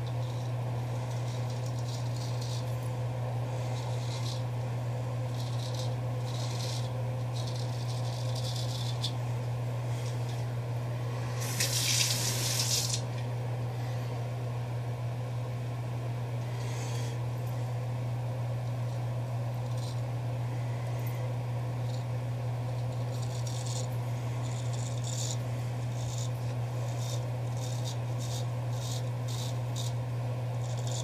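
Douglas Cutlery custom straight razor scraping through lathered stubble on the neck in short strokes, with a quick run of strokes near the end. Water runs briefly from a tap about twelve seconds in, the loudest sound, over a steady low hum.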